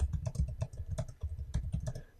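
Typing on a computer keyboard: a fast, irregular run of key clicks, each with a dull low thud.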